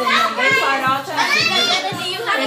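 Several children shouting and calling out as they play, one voice rising high just after the middle, over background music with a steady beat.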